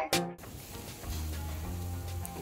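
The tail of guitar background music: one short last note that cuts off within half a second, then quiet room noise with a steady low hum.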